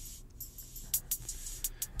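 Soloed drum-machine hi-hat pattern played back through Logic Pro X's Step FX: quiet, uneven high ticks, filtered and gated, with reverb and some distortion on them.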